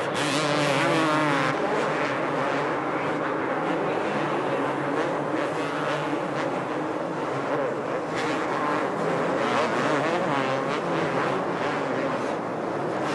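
Several 250cc two-stroke motocross bikes running together on a supercross track, their engines revving up and down over and over.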